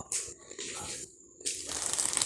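Plastic wrapping on packs of dish towels crinkling as the packs are handled and moved, in a few short bursts with a brief pause past the middle.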